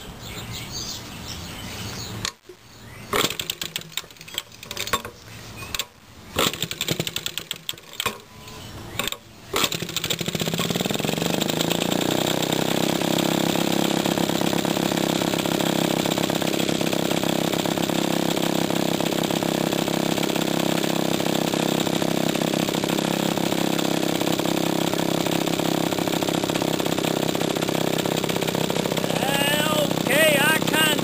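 1946 Maytag Model 72 twin-cylinder two-stroke engine, fitted with a muffler, being kick-started: for several seconds there are irregular pops and sputters, then it catches about ten seconds in and runs steadily. It runs with worn crankshaft bushings that let it suck extra air.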